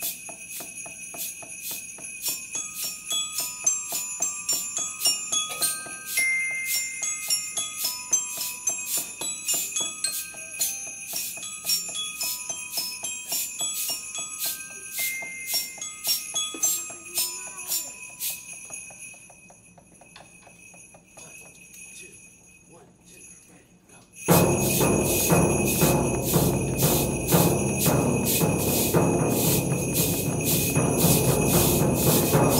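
Student percussion ensemble playing: sleigh bells shaken in a steady beat under a slow, single-note glockenspiel melody. Both fade away in the second half, and about 24 s in the whole group comes back in loudly with bass drum and sleigh bells.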